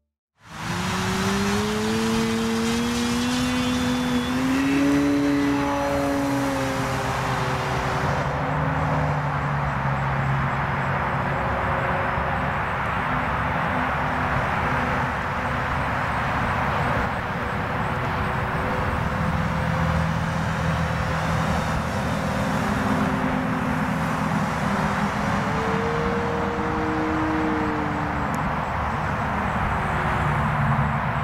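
Electric motor and propeller of a Graupner Husky 1800S foam model plane in flight, a steady drone that climbs in pitch over the first few seconds, holds, then rises and falls back again near the end. Wind rushes over the microphone throughout.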